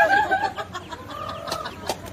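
Chickens squawking and clucking as they are chased and scatter, loudest at the very start, then a run of shorter, quieter calls.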